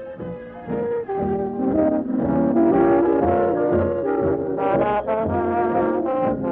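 A band playing a tune, with brass instruments to the fore, swelling louder about two seconds in. The sound is dull and thin, cut off above the mid treble, as in a poor old radio recording.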